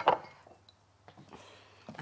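A bowl set down on a kitchen countertop with a sharp clink, followed by faint handling sounds as a small glass oil bottle is picked up.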